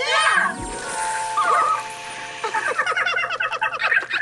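A soda siphon bottle hissing as its seltzer sprays out, over light music, with a comic falling-pitch sound effect at the start.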